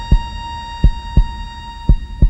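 Heartbeat sound effect in a song's arrangement: low double thumps, about one pair a second, over a faint held tone.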